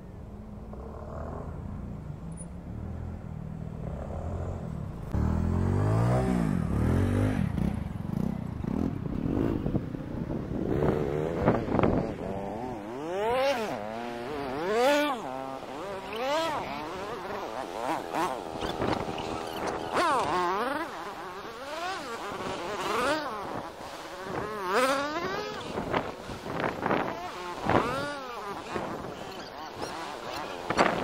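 Small street motorcycle ridden hard around on beach sand, its engine revving up and down over and over. It runs low and steady at first, then gets louder about five seconds in.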